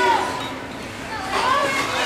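Children's voices calling out in short, high-pitched shouts, dipping quieter about halfway through before picking up again.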